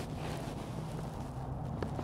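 Faint steady low hum under outdoor background noise, with no distinct events.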